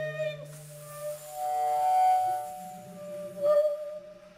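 Bass flute and bass clarinet holding long, soft, pure tones in contemporary chamber music. A low held note fades out about a second in while a steady middle note sounds throughout. A higher note swells to its loudest about two seconds in, and a new low note enters after it.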